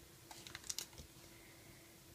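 Faint light clicks of rubber loom bands being stretched onto the plastic pegs of a Rainbow Loom, a few taps in the first second and then quieter.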